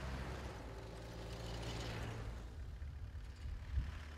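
A motor vehicle engine running with a steady low hum, under a wider rushing noise that swells over the first two seconds and then fades, with a short low bump near the end.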